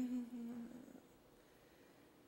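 A woman's voice holding one steady, hummed note that fades out within the first second, followed by near silence.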